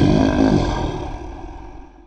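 Dragon-roar sound effect, loud and dying away to nothing near the end.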